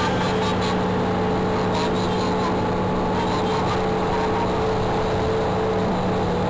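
City bus running, heard from inside the passenger cabin: a steady drone with a constant low hum, and a few light rattles in the first couple of seconds.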